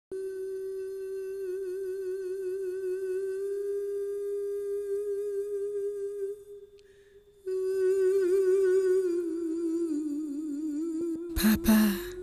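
A woman's voice humming long held notes with a slight waver, breaking off for about a second just after the midpoint, then coming back and sliding lower. A short, louder burst of sound comes near the end.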